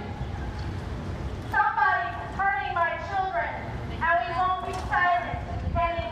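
A voice speaking in short, high-pitched phrases at some distance, too far off to make out, over a low steady rumble of outdoor background noise.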